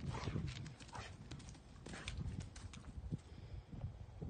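A Rottweiler chewing a small stick: a quick irregular run of sharp cracks and crunches as the wood splinters, thinning out after about three seconds.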